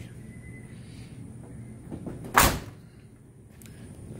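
A pickup truck's cab door being shut: one loud slam about two and a half seconds in.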